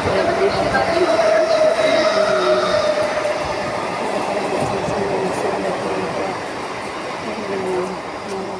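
Suburban electric local train running at the platform: a rumbling noise with a steady whine that fades out about three seconds in, the whole sound slowly growing quieter.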